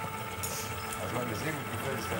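Tabletop chocolate fountain's small electric motor humming steadily as it keeps the melted chocolate flowing.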